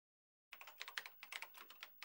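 Faint, rapid clicking of typing on a computer keyboard, starting about half a second in and stopping just before the end.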